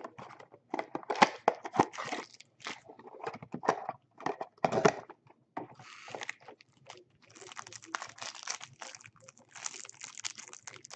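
Trading-card packs in plastic wrappers and a cardboard hobby box being handled and opened by hand: irregular crinkling, crackling and tearing with small clicks, turning into denser, continuous wrapper crinkling from about seven seconds in.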